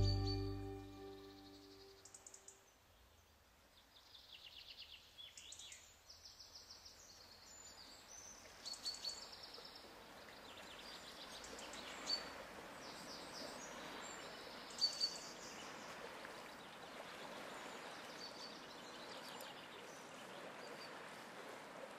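Background music ending on a low note that dies away, then faint bird chirps and trills over a steady rushing noise that grows a little louder about halfway through.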